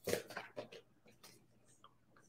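Oracle cards being shuffled by hand: a few soft papery swishes in the first second, then faint light ticks of cards.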